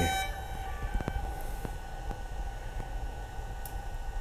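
A freshly powered-on DJI Phantom 4 Pro drone booting up: a steady whine with a few soft clicks as it cycles through its start-up.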